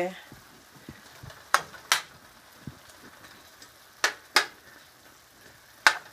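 Sliced onion, sweet pepper and carrot cooking down in vinegar in a pan with a soft, steady sizzle, while a utensil stirs them and knocks sharply against the pan five times.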